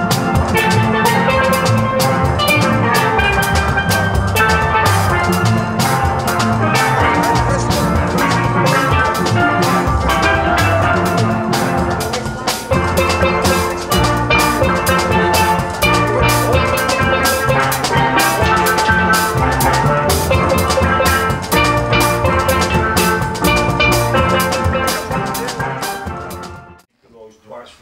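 Steel band playing: chromed steel pans carrying a melody over a drum kit with cymbals, to a steady beat.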